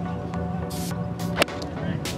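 A golf club striking the ball in a full approach swing: one crisp, sharp click about a second and a half in, over steady background music.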